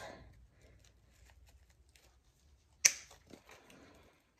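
A wire cutter snipping through a wire-cored artificial flower stem: one sharp snip nearly three seconds in, with a few fainter clicks after it. Faint rustling of stems and leaves being handled runs underneath.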